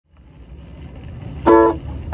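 A low background rumble fades in, then about one and a half seconds in a ukulele chord is strummed once and rings briefly.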